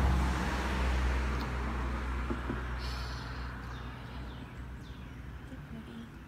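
Motor vehicle engine rumble, a steady low hum loud at first and fading away over about four seconds, as of a vehicle passing and moving off.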